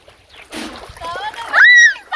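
Water splashing as a swimmer thrashes her arms in a river, followed near the end by a short, loud, high-pitched vocal cry.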